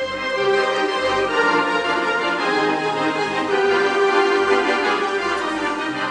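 Electronic organ playing: held chords over a bass line that moves every second or so.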